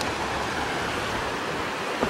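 Muddy floodwater in a desert wadi rushing steadily over rock shelves, a continuous even noise.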